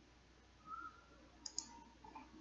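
Two quick computer mouse clicks close together, over faint room tone, with a brief faint tone a little before them.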